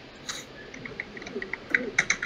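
Quick irregular clicks of typing on a computer keyboard, sparse at first and growing faster near the end, heard through a video-call's audio.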